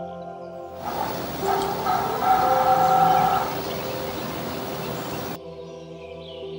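Heron giving a rough, harsh call over a noisy background. It starts about a second in, is loudest around two to three seconds, and cuts off about five seconds in. Soft piano music plays before and after it.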